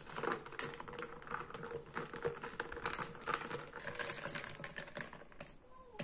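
A metal spoon stirring a glass of juice with ice, clinking quickly and irregularly against the glass and the ice cubes, with a faint ringing from the glass. The clinking stops about half a second before the end.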